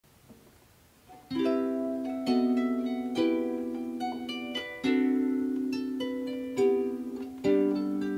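Harpsicle lever harp plucked, playing chords whose notes ring and slowly fade, with a new chord struck about every second. The playing begins about a second in, after a near-silent start.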